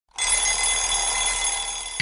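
Alarm clock ringing continuously with a high, bright bell-like tone, starting just after the beginning, waking a sleeper.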